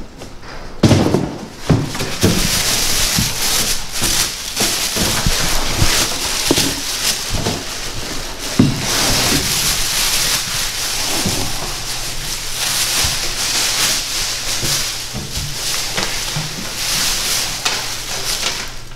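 Plastic shipping bag crinkling and rustling as a carpeted storage panel is pulled out of it, with a few knocks in the first seconds as the panel is handled in its cardboard box.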